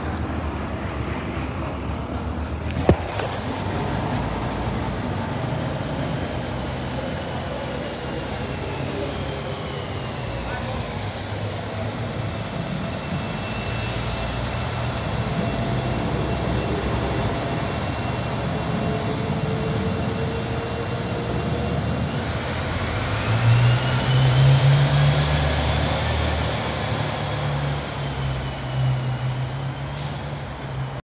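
Class 195 diesel multiple unit pulling away. Its underfloor diesel engines run steadily with whines gliding up in pitch as it gathers speed. The engines are loudest about 24 seconds in as they rev hard, and there is a single sharp click about three seconds in.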